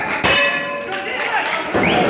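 Boxing ring bell struck once about a quarter second in, ringing briefly, followed by a few lighter knocks, over crowd chatter: the signal for the end of the round.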